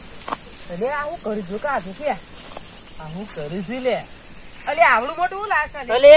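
A man's voice in three short phrases with swooping, rising and falling pitch, over a steady high hiss.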